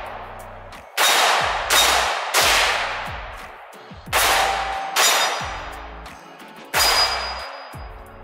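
Six rifle shots at an uneven pace: three quick shots about a second in, two more near the middle and one near the end. Each shot is loud and echoes away over about a second.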